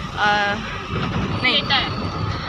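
Taxi engine and road rumble heard from inside the cabin, under a woman's speech. A brief steady pitched tone sounds about a quarter second in.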